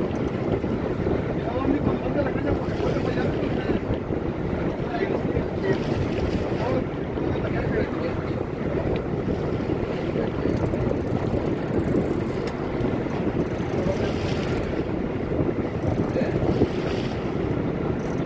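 Steady wind buffeting the microphone over the running of a sport-fishing boat and the sea around it, an even, unbroken noise with no distinct events.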